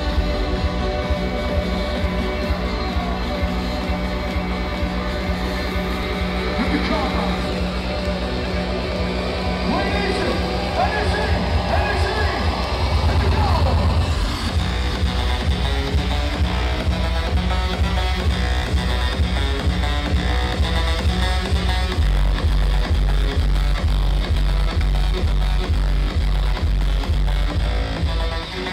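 Electronic dance music from a DJ set, played loud over a club sound system with a pounding bass beat. About 12 seconds in the beat quickens into a build-up, and it drops about two seconds later.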